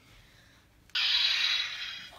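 A toy lightsaber's electronic sound effect played through its small speaker: a harsh, noisy burst that starts suddenly about a second in, holds for about a second, then fades.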